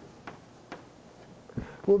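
Chalk tapping and clicking against a blackboard in a few short, sharp strokes as writing goes on, then a man's voice starts near the end.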